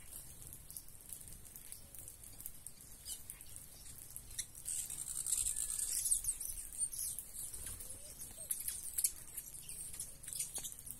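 A mixed flock of small finches (red-cowled cardinals, saffron finches and sparrows) chirping and twittering as they feed, many short, very high calls overlapping. The chatter grows busier and louder about halfway through.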